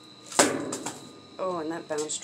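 Trash being handled inside a dumpster: one sharp, loud clack about half a second in, then a couple of softer clicks. A woman's voice follows in the second half.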